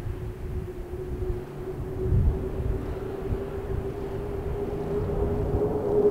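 Airbus A400M's four turboprop engines with eight-bladed propellers, approaching low overhead: a steady propeller drone that grows louder and edges up slightly in pitch, over an uneven low rumble.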